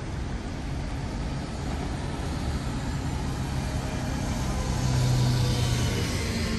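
Road traffic: vehicle engines running with tyres hissing on a wet road, the sound growing louder as a vehicle passes close a few seconds in.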